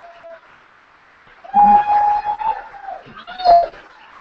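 Audience members whooping: a loud held whoop about a second and a half in, and a shorter one near the end.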